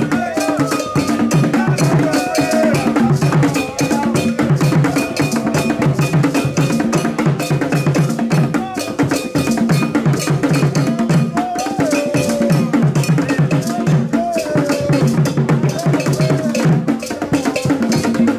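Ghanaian Kete drum ensemble playing: several hand drums beat a fast, steady interlocking rhythm over a repeating iron bell pattern.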